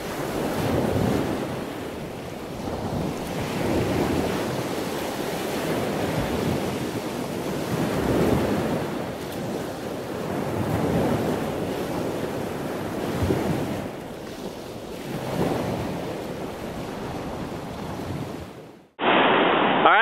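Ocean surf washing on a beach, swelling and easing every few seconds, with wind rumbling on the microphone. It cuts off abruptly near the end.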